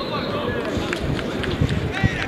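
Indistinct voices of people calling out around a football pitch during play, over steady outdoor background noise.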